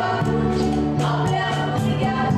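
Two women singing a Konkani tiatr song as a duet, with instrumental accompaniment under their voices.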